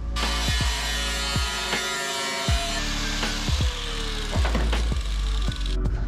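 A power tool cutting through the sheet-metal A-pillar seam of a car body shell. The cut starts suddenly and stops just before the end, with background music playing under it.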